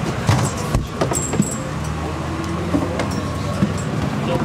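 Interior of a double-decker bus: the engine's low, steady hum, with scattered clicks and knocks from people moving about on board.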